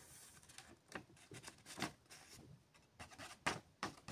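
Faint rustling of a sheet of graph paper being flexed and tapped by hand to tip fine begonia seeds off it, with a few short paper crackles.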